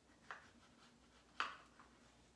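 Two short scraping clicks of a serving utensil digging into peach cobbler in a disposable aluminium foil pan: a small one just after the start and a louder one about a second and a half in.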